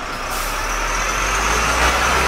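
Sound effect of a bus engine running with a steady low hum, joined about a third of a second in by a loud, bright hiss of air.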